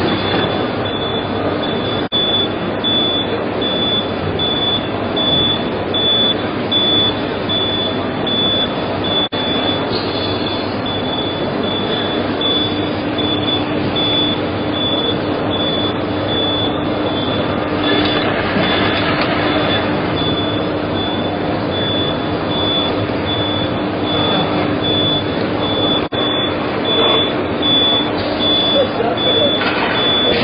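Busy exhibition-hall din of voices and running machinery, with a high-pitched beep repeating evenly throughout and a steady low hum joining about twelve seconds in.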